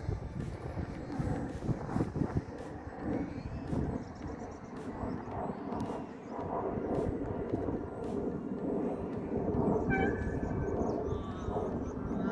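Wind buffeting the microphone over the distant rushing of a radio-controlled E-flite Habu STS electric ducted-fan jet in flight.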